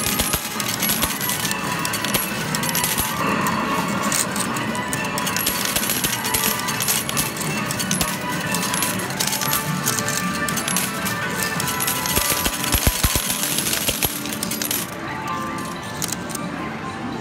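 Medal-pusher arcade machine with metal medals clattering and dropping in many quick clicks, and a cluster of heavier knocks a little after the middle, over the machine's electronic game music.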